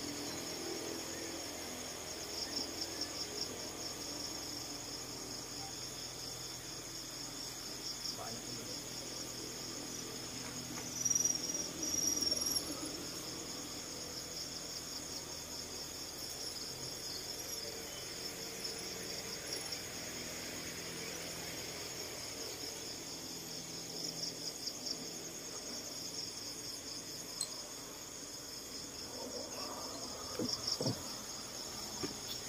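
Crickets chirring steadily as a continuous high, finely pulsing trill, briefly louder about eleven seconds in.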